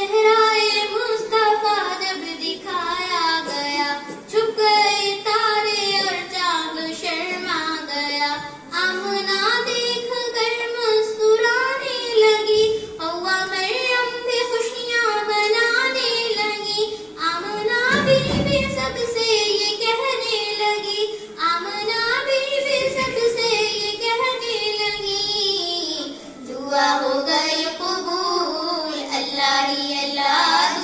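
A girl singing an Urdu naat, a devotional song in praise of the Prophet, into a handheld microphone, with no instruments. A brief low thump a little past halfway.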